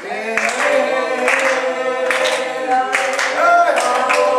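A group of people singing together unaccompanied, several voices at once, with sharp hand claps keeping time about once a second.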